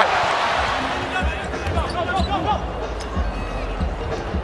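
Arena crowd noise of an NBA game broadcast, with a basketball being dribbled on the hardwood court in repeated low thuds.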